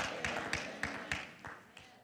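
A short pause between spoken sentences: a faint echo dies away, with a few soft, scattered taps.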